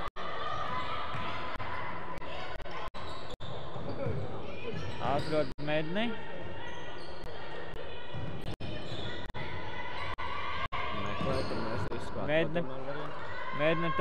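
Court sounds of an indoor ultimate frisbee game in a large, echoing sports hall: players running on the wooden floor with shoe squeaks, and voices calling out about five seconds in and again near the end. The sound cuts out for a split second several times.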